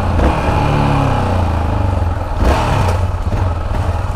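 Yamaha XT660's single-cylinder engine running under the rider, its pitch falling over the first second and a half as the bike slows, with a brief louder rush about two and a half seconds in.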